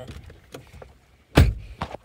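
A car door being shut from the inside: one heavy thud about a second and a half in, followed by a lighter click.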